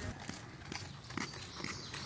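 Footsteps on a paved asphalt trail: light, uneven taps of several people walking.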